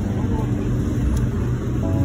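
Low, steady rumble of city street noise while walking a sidewalk, with faint voices in it.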